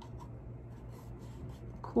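Faint scratchy rubbing and a few small clicks as hands handle and turn a box covered in glass seed beads.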